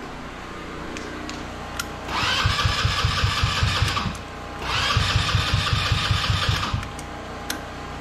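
Helix 150 go-kart engine being cranked by its electric starter in two bursts of about two seconds each. Each burst has an even chugging of about five compression strokes a second under the starter's whine, and the engine never catches. It cranks without firing because fuel is not reaching the carburettor, which the owner puts down to fuel delivery.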